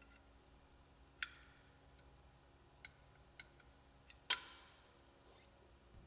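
A few separate sharp metallic clicks from a torque wrench as an ATV's oil drain plug is tightened to 12 ft-lbs, the loudest just after four seconds in.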